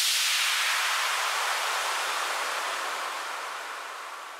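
Synthesized white-noise wash at the tail of an electronic dance track, fading steadily away with no beat or melody left under it.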